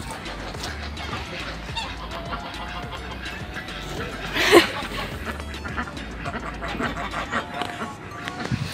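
One short, loud waterfowl call about halfway through, over faint background music.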